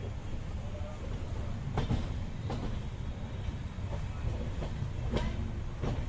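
Coaches of a moving express train running on the rails: a steady low rumble with a handful of irregular sharp clicks as the wheels pass over rail joints and trackwork.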